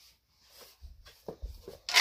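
Handling noise from a person moving about with hockey sticks: two soft low thumps and a few light clicks, ending in one sharp knock.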